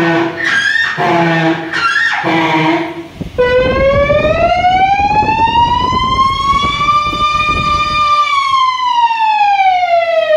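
A boy's voice mimicking a siren into a microphone. A few short vocal calls come first, then from about three seconds in a single long wail that slowly rises and falls again.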